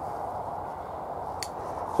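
Steady low rush of wind with no voice, and one short, sharp click about one and a half seconds in.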